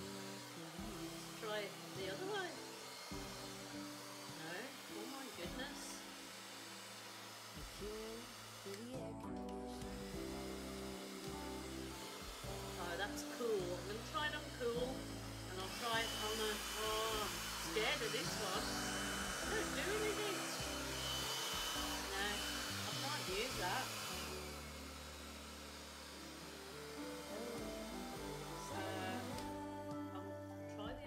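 A hair dryer blowing acrylic paint across a canvas, about halfway through, for some eight seconds: a steady hiss with a thin high whine. Background music plays throughout.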